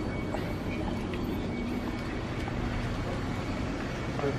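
Steady background ambience of a shop interior: an even hum with no distinct events.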